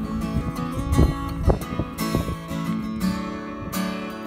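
Acoustic guitar strummed, held chords ringing between the strokes, with no voice.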